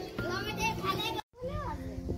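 Children's voices and playful calls over background music, with a very short break in the sound just over a second in.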